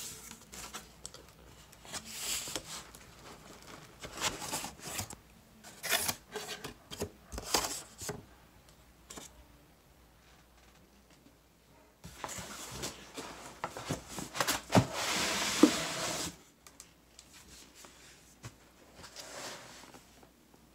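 Hands handling a corrugated cardboard laptop box and its foam packing: irregular scraping, rubbing and rustling of cardboard, quiet for a couple of seconds midway, then a louder stretch of rustling with a few sharp knocks.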